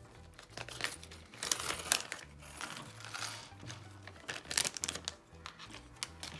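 Thin plastic zip-lock bag crinkling in short bursts as it is opened and handled by hand. Soft background music with a low bass line plays underneath.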